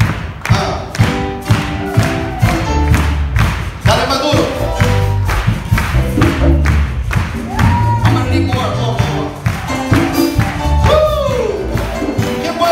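Live worship band playing an upbeat song: drums keep a steady beat of about two hits a second under low bass notes, with a voice calling out briefly over the music a few times.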